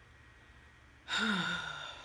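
A woman's long, weary sigh about a second in, voiced and falling in pitch, trailing off breathily over about a second.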